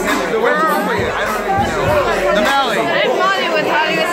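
Several people talking at once: steady crowd chatter, with no single voice standing out.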